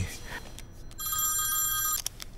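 Mobile phone ringing with an electronic ringtone of several steady high tones. After about a second's pause it rings again, about a second in.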